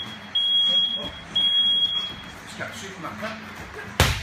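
An electronic beeper sounding a series of long, steady, high-pitched beeps, about one a second with short gaps, that stops about two seconds in.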